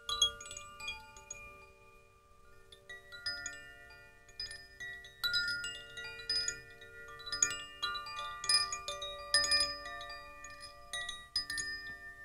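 Chimes ringing: bright metal tones at many pitches, struck at irregular moments and in small clusters, each tone ringing on and overlapping the next.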